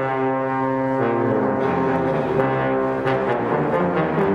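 Concert band brass music, led by two trombones playing long held notes, the chord changing about once a second.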